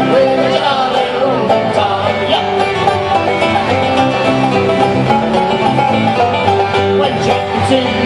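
Irish pub band playing an instrumental passage between sung verses, with plucked strings, banjo among them, keeping a steady running rhythm.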